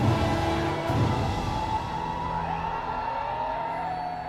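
Orchestral film score, with two heavy low hits about a second apart followed by held chords. A wailing, siren-like glide rises and falls under it near the end.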